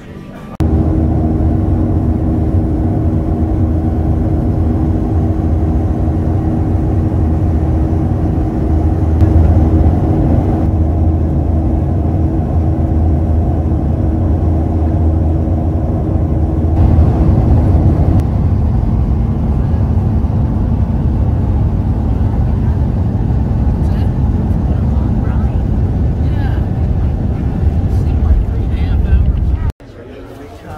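Steady, loud drone inside a jet airliner's cabin in flight: engine and air noise with a few steady low hums, which drop away about 18 seconds in while the drone goes on.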